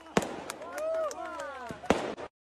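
Fireworks going off: two sharp bangs, one just after the start and one near the end, with smaller cracks between.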